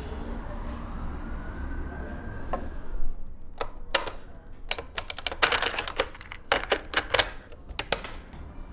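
Piano-key buttons of a National cassette tape recorder being pressed: a low steady hum for the first three seconds, then a string of sharp mechanical clicks and clunks from about three and a half seconds in, coming in quick runs.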